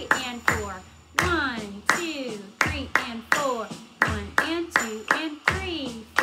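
Hand claps in a steady counted rhythm, about two to three a second, with a woman's voice chanting the counts along with them.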